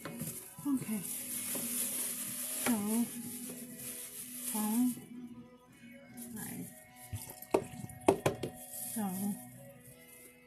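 A kitchen tap runs into a stainless steel sink for about five seconds, then stops. A few sharp clatters follow near the end, like dishes knocking in the sink.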